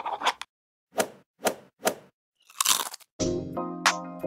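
Sound effects for an animated title card: three short, sharp clicks about half a second apart, then a brief scratchy stroke like a marker on a board. Pitched outro music starts near the end.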